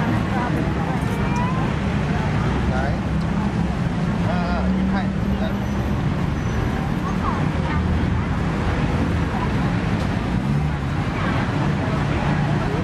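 Street-market ambience: scattered voices of passers-by over a steady low rumble of nearby traffic.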